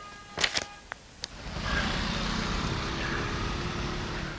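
City street traffic: cars driving along a road, after a few faint clicks the steady noise of traffic sets in about a second and a half in.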